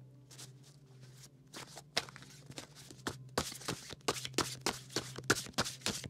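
A deck of tarot cards being shuffled by hand: a run of quick, soft card flicks and slaps that grows busier and louder about halfway through.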